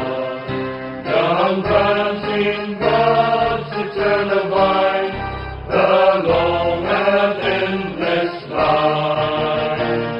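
Group of voices singing a hymn-like song in long held phrases, the lines sung with musical backing.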